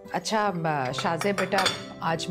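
Cutlery and dishes clinking at a dining table, with several sharp clicks under a woman talking.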